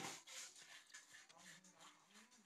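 Near silence: faint wet rustling and soft ticks of beef salad being tossed with chopsticks in a large aluminium pot, with a faint low wavering voice-like sound in the second half.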